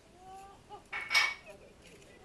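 A short, loud clattering clink about a second in, with a brief ringing tone, over faint high-pitched wavering voices or calls.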